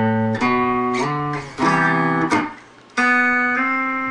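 Clean-toned electric guitar playing a slow phrase of single notes and chords from a tab exercise, each note plucked and left to ring, with a short pause about halfway through.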